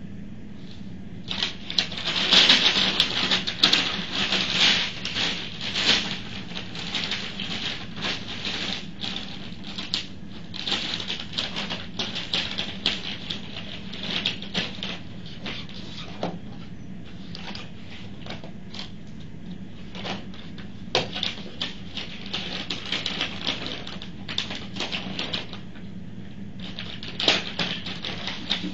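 Papers and packaging being handled at a table by gloved hands: irregular rustling and crinkling with small clicks, busiest in the first few seconds and again near the end, over a steady low hum.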